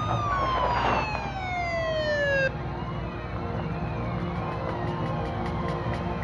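Police car siren wailing: its pitch peaks just as the sound begins, then falls steadily for about two and a half seconds and cuts off suddenly. Fainter wavering siren wails and a steady low rumble carry on underneath.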